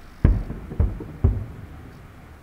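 Aerial firework shells bursting: three loud booms about half a second apart, with smaller pops between them.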